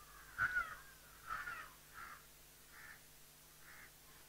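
A bird calling repeatedly outdoors: about five short calls roughly a second apart. The first is the loudest and the rest grow fainter.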